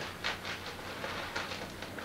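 Sheets of paper rustling and crinkling as a thick wad is handled and pushed into an envelope: a run of quick, irregular crackles.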